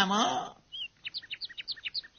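A quick run of about a dozen short, high bird chirps, starting just under a second in after a voice breaks off.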